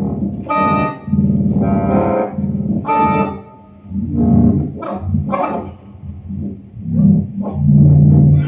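Synthesizer keyboard played in free improvisation: pitched, overtone-rich tones come in short, irregular phrases with brief gaps, one deeper pause about halfway through.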